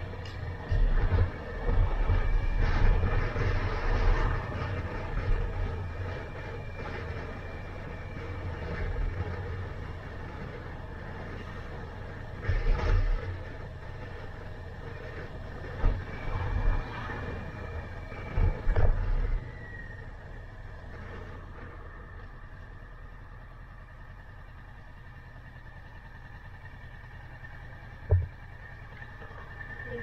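Kawasaki motorcycle riding at low speed, its engine running steadily under wind buffeting on a helmet-mounted microphone. The buffeting comes in heavy gusts for the first several seconds and again about midway, then eases. A single sharp knock sounds near the end.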